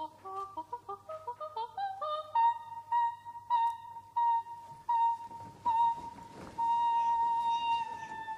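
Operatic soprano singing a quick run of short, detached notes climbing in pitch. It settles into repeated short notes on one high pitch and then a long held high note that sags slightly in pitch at the very end.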